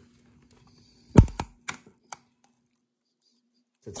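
A glued-in electrolytic capacitor snapping loose from a circuit board as it is pulled with pliers: one sharp snap about a second in, followed by a few lighter clicks. The snap is the old glue letting go, since the leads are already desoldered.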